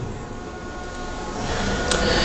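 Steady background noise of a hall, a low hum and hiss with no speech, and a brief click near the end.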